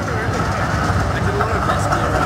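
Busy city street: a steady traffic rumble with the voices of passers-by mixed in.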